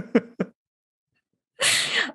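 The tail of a person's laughter, three short breathy laugh pulses, then a pause and a sharp breath in near the end.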